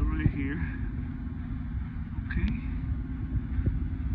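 Steady low machinery hum of a building mechanical room, with a few faint voice fragments over it.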